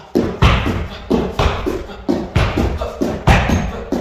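Kicks striking a hanging heavy bag: a rapid, uneven series of sharp thuds, about two a second.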